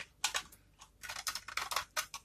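A utility knife blade shaving a dry, varnished bar of soap, the soap crunching and crackling as flakes break off. There are a couple of short strokes at the start, then a longer crackly stroke from about a second in.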